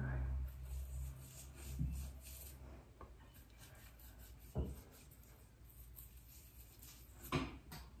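Faint rubbing of a fingertip working a grainy lip scrub over the lips, with a few soft clicks. A low hum fades out about three seconds in.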